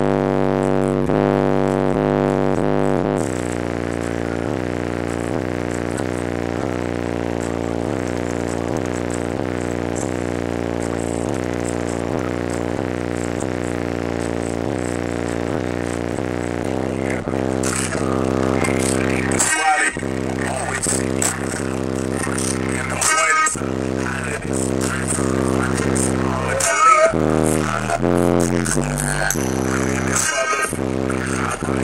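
Two 12-inch Sundown Audio ZV3 subwoofers playing bass-heavy music loud in a car, a buzzing bass line stepping from note to note. The bass is louder for the first few seconds, and the sound briefly cuts out three times in the second half.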